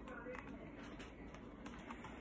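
Faint, scattered clicks and light handling noise from a hardcover picture book being held and shifted in the hands.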